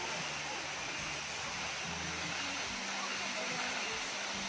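Waterfall falling steadily onto rocks, a constant, even rush of water.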